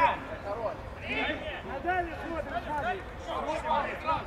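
Men shouting during play on a football pitch, with calls from players and the touchline.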